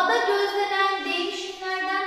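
A woman's voice, high and drawn out, moving in steps between held pitched tones.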